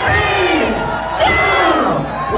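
Crowd yelling and screaming, with close voices shouting in long rising and falling cries while the dance music has dropped out.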